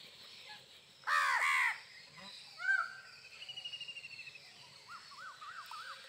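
House crows cawing: a loud burst of several harsh caws about a second in, a single caw near three seconds, and a run of quicker, softer calls near the end.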